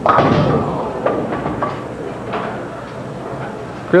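A bowling ball clipping the four pin at the side of the rack: a sudden crack of pin impact, then pins clattering down and rattling in the pit, fading over the next few seconds.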